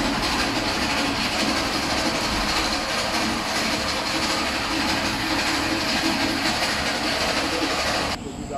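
Loud, steady mechanical running noise from a motor-driven machine.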